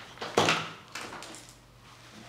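Handling noise as a round plastic probe connector is brought to a handheld battery tester's case: one short knock or scrape a little way in, then a faint click about a second in.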